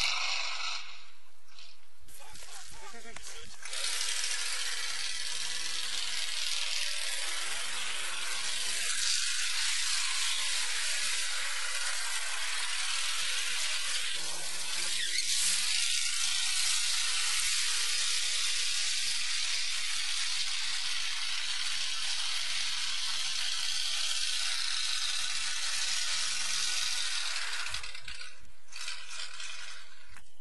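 A 1977 Mercury Cougar doing a burnout: a spinning rear tyre on pavement makes a steady, loud hiss from about four seconds in until shortly before the end. The car has no posi-traction yet, so the open differential lets one rear wheel spin.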